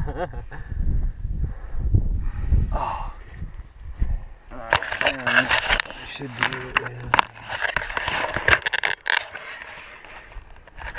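Indistinct voices over wind rumbling on the microphone. Near the end comes a quick run of scrapes and clicks as the camera is handled and turned around.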